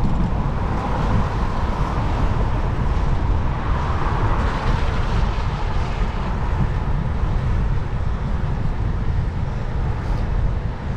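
Wind rumbling on the microphone of a bicycle's handlebar camera while riding along a wet road, over a steady hiss of road and traffic noise. The noise swells briefly about four seconds in.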